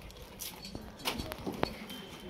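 A few scattered light clicks and knocks over a faint murmur of voices.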